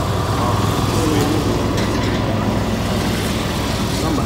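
Steady low engine hum of a vehicle running, with faint voices in the background.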